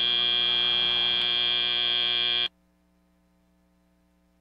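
FIRST Robotics Competition end-of-match buzzer: one steady, buzzy tone that holds for about two and a half seconds and then cuts off suddenly, marking the match clock reaching zero.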